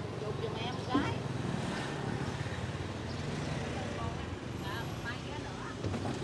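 Steady hum of street traffic and motorbike engines, with faint voices talking in the background.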